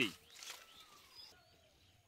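Faint bird calls over quiet outdoor background: two short chirps about a second apart, after a man's voice cuts off at the start.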